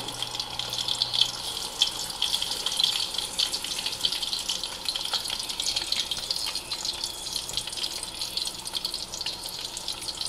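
Whole milkfish deep-frying in hot oil in a wok: a steady sizzle full of fine crackles and small pops.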